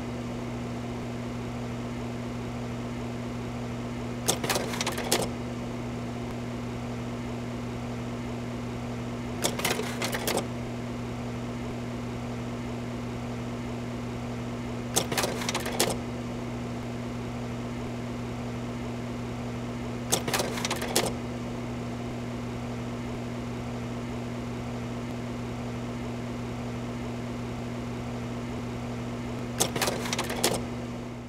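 A steady low machine hum, with a short cluster of sharp mechanical clicks about every five seconds.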